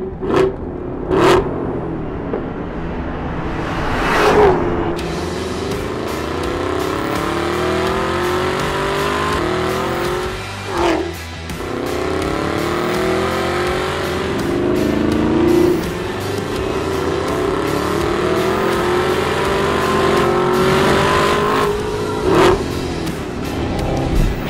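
Camaro ZL1 1LE's supercharged V8 accelerating hard on a track, its pitch climbing steadily through each gear and dropping sharply at each upshift of the 6-speed manual, about four times. Background music plays under the engine.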